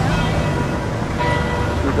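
Church bells ringing, their tones sounding out and dying away, over a low steady engine hum that fades about one and a half seconds in.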